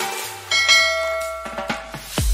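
Background music: a bell-like chime is struck about half a second in and rings out, fading away.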